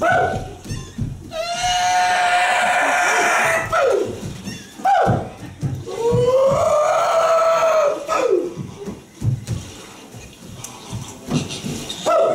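Drawn-out wailing vocal cries: a long held note about a second in, then a second long note that rises and falls in an arch, with short falling yelps between and after.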